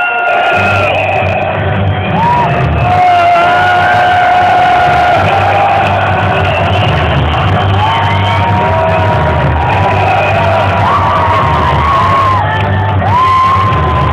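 Loud live electronic music from a DJ set over a festival PA: a deep, sustained bass comes in about half a second in, with the crowd shouting and whooping over it.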